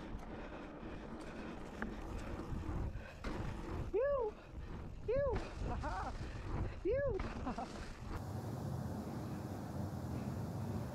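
A mountain biker whooping "woo" four times, about a second apart, each call rising and falling in pitch, over the steady rush of wind and tyres rolling on a dirt trail. The background noise changes abruptly about eight seconds in.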